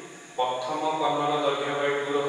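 A man's voice speaking slowly in a drawn-out, sing-song way, starting about half a second in after a short pause.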